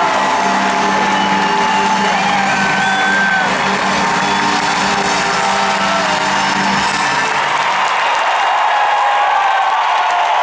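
Live rock band's music, with a large arena crowd cheering over it. The band's low sustained notes drop away about seven seconds in, leaving mostly the crowd.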